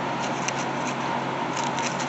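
Dried apple mint leaves rustling and crackling on parchment paper as a hand sifts through them, with a few light crisp ticks.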